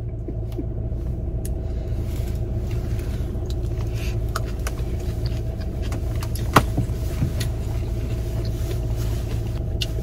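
A car's engine running, heard from inside the cabin as a steady low rumble, with a few light clicks over it, the sharpest about six and a half seconds in.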